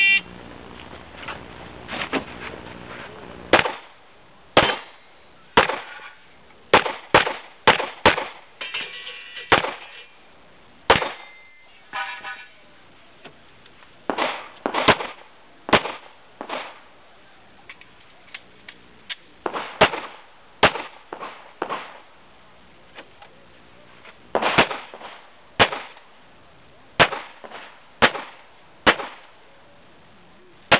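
An electronic shot-timer start beep, then a handgun being fired about twenty times in quick strings with short pauses between them, as the shooter works through a stage.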